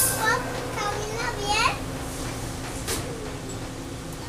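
A young child's high-pitched voice chattering and squealing for the first couple of seconds, over the steady hum inside a subway car. A single sharp click near the end.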